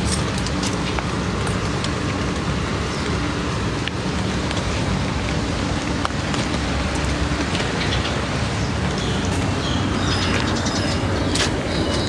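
Steady outdoor background noise in the rain: an even wash of falling rain and city traffic, with a few faint clicks.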